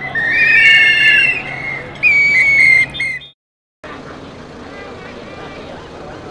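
Several whistles blown by protesters in a crowd: loud, shrill, overlapping blasts, one of them trilling, over crowd noise. They cut off suddenly a little over three seconds in, and after a short gap there is quieter crowd hubbub.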